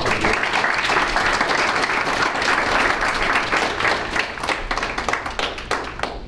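Audience applauding: many people clapping at once, starting straight away and thinning out near the end.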